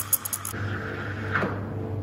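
Espresso machine steam wand hissing as it steams milk in a stainless pitcher, shut off about half a second in; a softer hiss trails away over the next second above a steady low hum.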